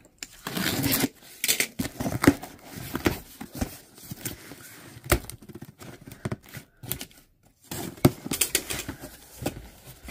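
A utility knife slitting the packing tape along the top of a cardboard box, then the cardboard flaps being pulled open, with irregular scraping, tearing and rustling of tape and cardboard.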